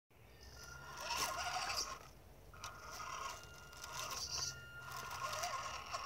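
Electric motor and gearing of an RC rock crawler whining in three throttle bursts of a second or two each, with clicks and scrapes of the tyres on rock as it climbs a boulder.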